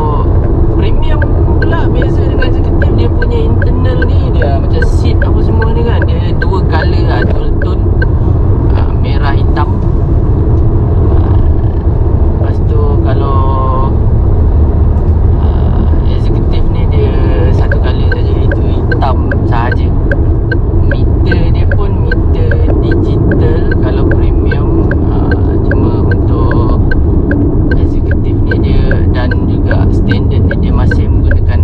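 Steady low road and engine rumble inside the cabin of a moving Proton X50, under a man talking. A regular light ticking, about two a second, runs through much of the second half.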